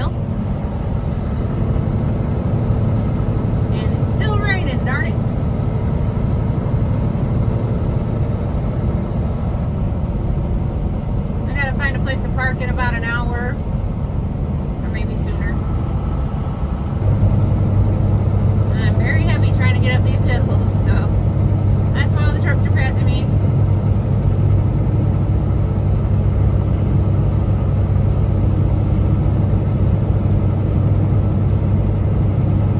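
Steady drone inside a Kenworth T680 semi-truck cab at highway speed, engine and tyres on a wet road, with a low hum that gets louder about halfway through.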